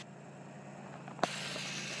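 Faint roadside background noise: a low steady hum under a weak hiss, with a single click a little over a second in, after which the hiss grows louder.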